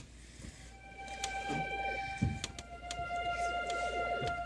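Electronic keyboard playing slow, long held notes that enter one after another about a second in and stack up into a sustained chord.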